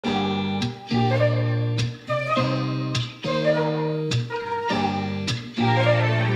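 Background music: sustained chords that change every second or so, each change starting sharply.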